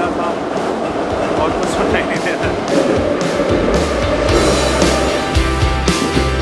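Moscow Metro train running, heard from inside the carriage as steady ride noise. About four seconds in, background music with guitar and a beat comes in over it.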